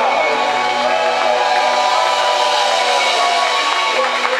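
Live rock band playing, with electric guitar and drums, a melodic line gliding over held chords.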